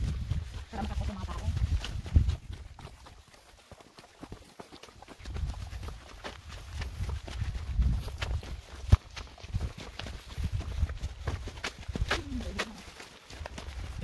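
Footsteps on a rocky dirt trail, a run of irregular scuffs and clicks. Wind rumbles on the microphone throughout, easing off for a moment around four seconds in.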